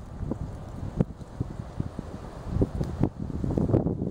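Wind buffeting the microphone: an uneven low rumble, with a couple of sharper gusts about a second in and again near three seconds.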